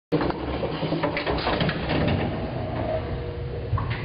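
Freight elevator running: a steady low rumble, with short metallic rattles and clanks in the first couple of seconds.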